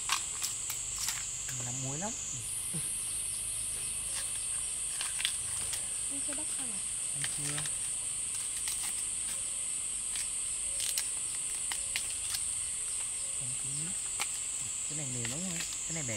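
A steady high-pitched insect drone that steps up in pitch about two seconds in, over scattered sharp clicks and snaps from bamboo shoot husks being peeled by hand.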